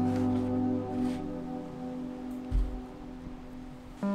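Background music of slow, held notes, with a short low thump about two and a half seconds in.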